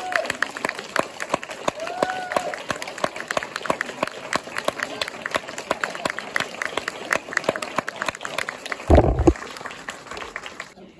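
Audience applauding, with sharp hand claps close to the microphone and a short voice cheer about two seconds in. A loud low thump comes near the end as the clapping thins out.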